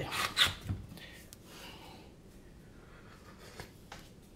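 A few brief rubbing and handling noises in the first second, then quiet, steady room tone.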